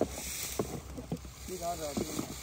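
Flat metal spatula scraping and sloshing through thick molten jaggery in a wooden tray, with a few soft knocks. A brief bit of a voice comes near the end.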